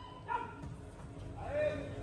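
Faint, short shouts and calls from players across an indoor hall, with the low hum of the hall behind them.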